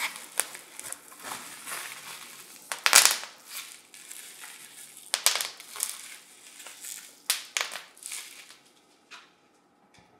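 Bubble wrap packaging being handled and unwrapped, crinkling and crackling in irregular bursts, the loudest about three seconds in, and going quiet over the last second.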